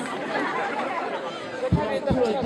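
Crowd chatter: several voices of people in a standing crowd talking over one another at once. A couple of short low thumps on the microphone near the end.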